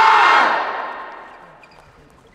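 A group of voices holding a loud shout in unison. It breaks off about half a second in and fades out over the next second.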